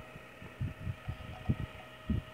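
Soft, irregular low thumps on the microphone, about six in two seconds, over a faint steady hum.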